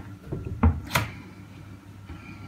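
Aquarium stand's cupboard door being opened: a low thump and then a sharp click a little under a second in, over a steady low hum.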